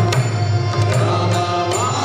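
Kirtan music: a harmonium holding steady chords, mridanga drum strokes and voices chanting a devotional refrain.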